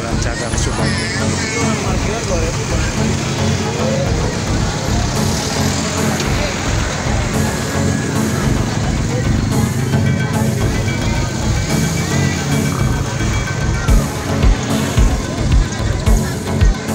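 Voices of a roadside crowd and motorcycles passing on the road, under background music with a steady beat that comes to the fore near the end.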